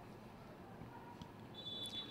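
Faint open-air stadium ambience, then near the end a short, steady high whistle blast from the referee, the signal for the free kick to be taken.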